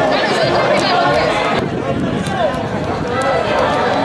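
Overlapping voices of several people talking and calling out, an indistinct chatter with no single clear speaker, with a few faint short clicks.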